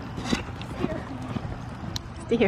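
Hoofbeats of a horse cantering on a sand arena, dull thuds of hooves on soft footing.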